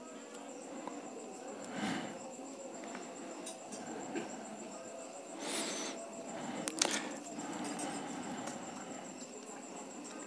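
Plastic back cover of a smartphone being pried away from its frame and adhesive by hand: faint scraping and rustling, a brief louder scrape about halfway through, and a couple of sharp clicks shortly after.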